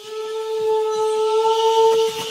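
A single long, steady note with a horn-like, wind-instrument tone, held at one pitch, from the film's score, over a faint high hiss.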